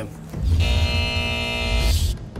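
A short musical transition sting: a steady held chord over deep bass, about a second and a half long, ending in a brief whoosh.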